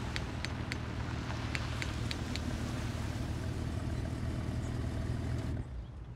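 Steady low rumble of a car engine, with a few sharp high clicks in the first couple of seconds. The sound drops away abruptly near the end.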